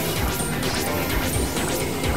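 Experimental industrial noise music played on synthesizers: a dense, harsh wash of sound with a busy low end and rapid crash-like hits layered through it.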